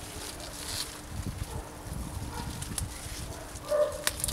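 Sea beet leaves rustling and stalks snapping as they are picked by hand, over a low rumble. A short pitched sound comes near the end.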